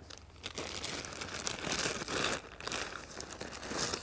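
Clear plastic bag crinkling as it is handled, rising and falling irregularly for a few seconds.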